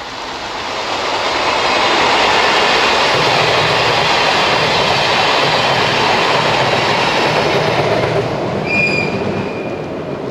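Electric-locomotive-hauled train of old-type passenger coaches passing close by: the running noise of wheels on rail builds over the first two seconds, then stays loud as the coaches and rear locomotive go past. Near the end a brief high tone sounds for about a second.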